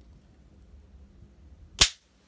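A styrofoam packing block from a diecast car box snapped in two by hand: one sharp crack near the end.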